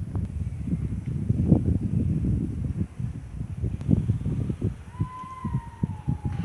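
Wind buffeting the microphone: a loud, dense low rumble with irregular gusts. About five seconds in, a single long whistle-like tone comes in, falling slightly in pitch.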